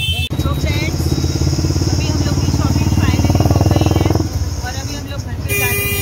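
A motor vehicle engine running close by, its rapid, even firing pulses loud and low. It drops away about four seconds in, leaving a steady low hum.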